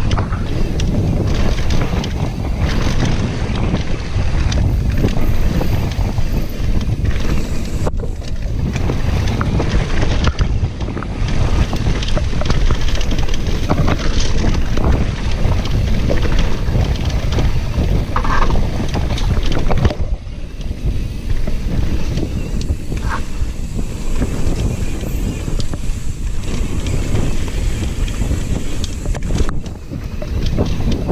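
Wind buffeting a camera microphone during a fast mountain-bike descent: a constant loud, low rumble with rapid clicks and rattles from the enduro bike running over the trail. It eases briefly about twenty seconds in.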